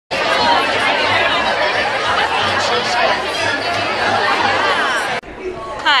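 Crowd chatter: many people talking at once, loud and overlapping, cutting off suddenly about five seconds in.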